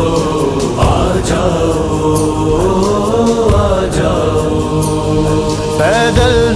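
Devotional manqabat music: voices chanting long held, slowly gliding notes without clear words over a low sustained backing. Near the end a voice slides upward into the next sung line.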